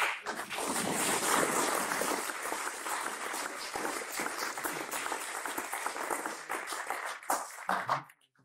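An audience applauding: a dense patter of many hands clapping that thins out into a few separate claps near the end.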